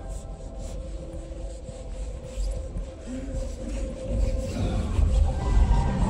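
Music and soundtrack from a cinema auditorium's sound system, heard from the entrance corridor: muffled at first, then growing louder with a deep low rumble over the last couple of seconds as the screen comes into view.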